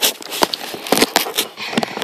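Handling noise close to a tablet's microphone: a rapid, irregular string of clicks, knocks and rustles as the tablet and a cardboard-and-plastic doll box are moved about.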